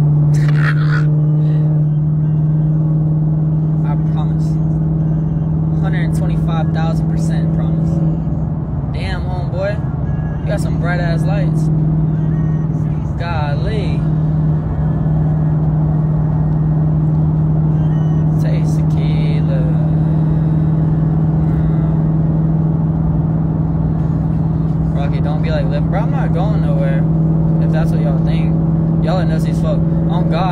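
Steady low drone of a car, heard from inside the cabin. Snatches of a voice, singing or chanting, come over it from about a quarter of the way in to the middle, and again near the end.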